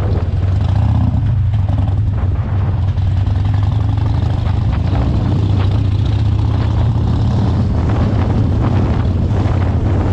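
Harley-Davidson Roadster's 1202cc air-cooled V-twin running steadily at road speed, heard from the rider's position as a steady low drone.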